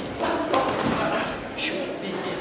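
Indistinct voices calling out in a gym hall, with a few dull thuds as two boxers trade punches and close into a clinch.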